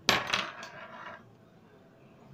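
Steel screwdriver shaft striking a metal fuse part: one sharp metallic clink that rings for about a second, with a few lighter taps just after it.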